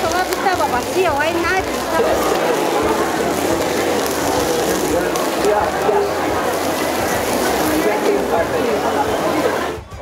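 Chorizo sausages and thinly sliced beef sizzling steadily on a grill over hot charcoal, with people's voices in the background. The sizzle cuts off just before the end.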